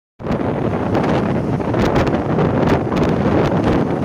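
Wind buffeting the microphone on a motorcycle moving at road speed: a steady rush of noise with occasional crackles.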